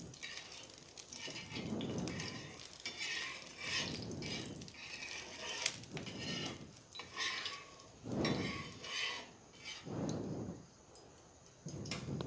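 Metal utensil scraping across an iron tawa, spreading oil over the hot griddle in repeated strokes about once a second.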